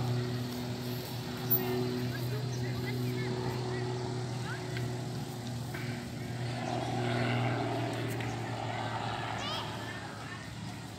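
Distant propeller-driven aerobatic plane's engine droning steadily overhead; its higher overtones fade about seven seconds in.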